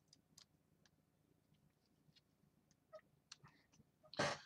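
Near silence with a few faint, scattered clicks from a small screwdriver driving a machine screw into the frame of a model kit.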